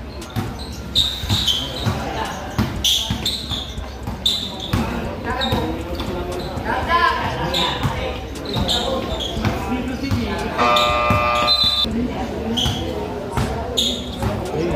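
A basketball being dribbled repeatedly on the court floor during one-on-one play, with short high squeaks from sneakers and the voices of onlookers in a large covered hall.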